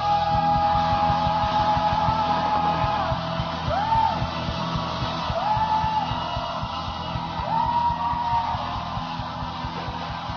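Rock and roll record playing: full band with a long held high vocal note, then three short swooping yells, the music easing slightly in loudness toward the end.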